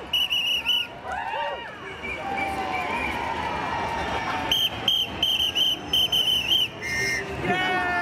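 A shrill whistle blown in quick rhythmic toots, one run at the start and another about halfway through. Between and after them, people whoop and shout over a steady crowd hubbub.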